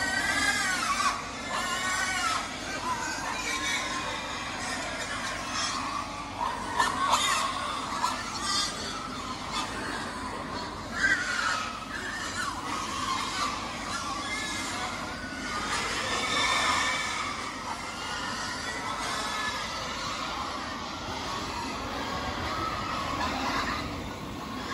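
A crowd of young pigs, about two months old, squealing over and over as they jostle for feed at a crowded feeder, with a few louder, sharper squeals now and then.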